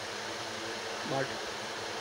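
Steady background hiss with a faint low hum, like a running fan or room noise, under a single short spoken word about a second in.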